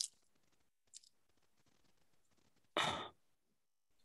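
Mostly near silence, with one short, breathy exhale about three seconds in, like a sigh into a microphone.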